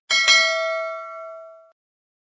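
Notification-bell sound effect: a single bright bell ding that rings out and fades away over about a second and a half.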